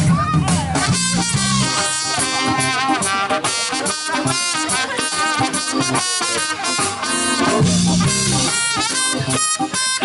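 Live funk band playing an instrumental: a trumpet plays a bending melodic line over a steady drum-kit beat and electric guitar.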